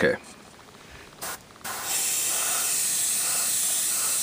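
Badger Sotar 2020 airbrush spraying paint with its needle opened full bore: a brief puff of air a little after one second in, then a steady high hiss of continuous spraying from about two seconds in.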